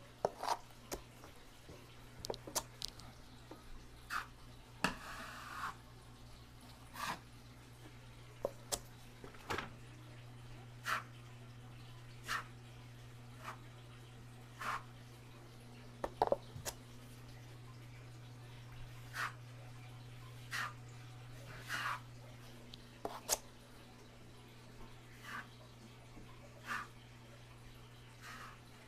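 Steel drywall taping knife spreading and scraping wet joint compound on a wall and against the mud pan, short scraping strokes about every second or so, with one longer stroke about five seconds in. A steady low hum runs underneath.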